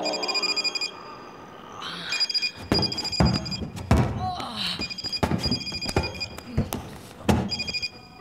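Staged fistfight with repeated heavy thuds and blows and a man's grunts, the blows loudest. Over it a phone rings with a pulsing electronic trill, in short bursts at the start and again several times later on.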